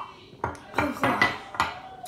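Drinking glasses set down on a granite countertop: a quick series of sharp knocks and clinks of glass on stone over about a second.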